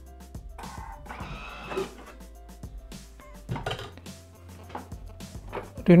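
Background music on mallet percussion, with a few brief clatters and knocks of a Thermomix's lid being taken off and its steel mixing bowl lifted out, about a second in and again around three and a half seconds.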